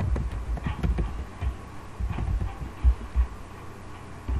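Computer keyboard being typed on, an irregular run of dull, low thumps as the keys are struck.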